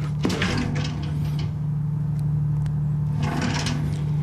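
A wooden cabinet drawer being slid open over a steady low machinery hum.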